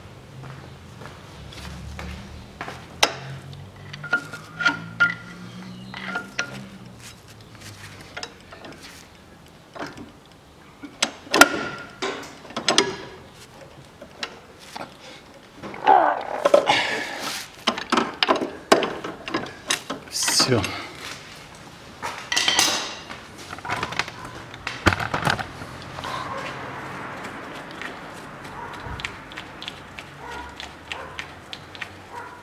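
Irregular metallic clinks and knocks of hand tools against the engine of a VAZ-2110 (Lada 110). A screwdriver is wedged in the flywheel teeth to lock it while the crankshaft pulley bolt is knocked loose with a drift.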